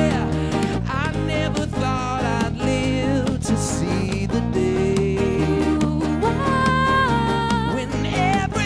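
A live rock band playing a song: a male lead voice singing over strummed acoustic guitars, electric guitar and drums.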